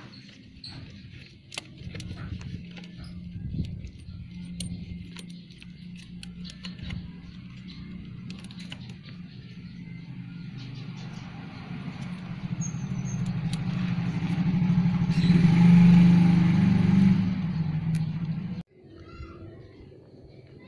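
Honda Beat eSP scooter's single-cylinder engine running steadily, with scattered light clicks from handling in the first seconds. It grows louder over the second half, then cuts off suddenly near the end.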